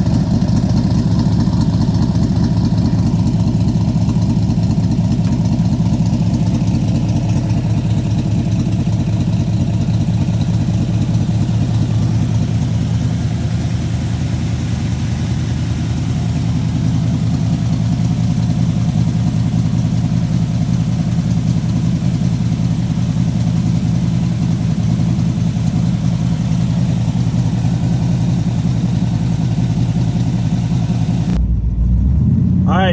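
1974 Corvette's carbureted V8 idling steadily, with an even low exhaust pulse.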